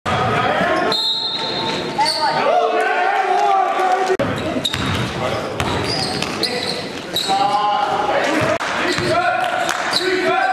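Indoor basketball game: a basketball bouncing on the gym floor among voices, echoing in a large hall.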